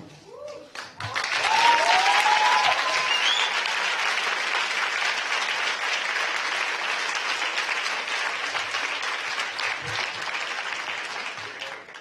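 Audience applauding, starting about a second in and fading near the end, with a couple of voices calling out about two seconds in.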